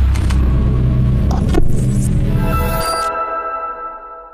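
Music for the channel's logo outro: a deep bass rumble with a few glitchy clicks, which cuts off near the end and leaves a held chord fading out.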